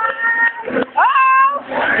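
Two high-pitched shouted whoops from spectators, one at the start and one about a second in, each rising sharply in pitch and then held for about half a second, cheering on a dancer.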